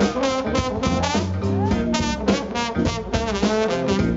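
A live soul-blues band playing an instrumental passage led by a brass horn section, over a drum kit and a steady low bass line.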